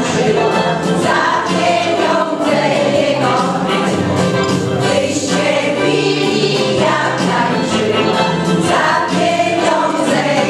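A women's folk choir singing a song together, voices held steadily from note to note.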